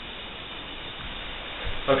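Air hissing steadily out of a small balloon through a bent drinking straw, the jet that spins a homemade helium balloon copter. There are a few low thumps near the end.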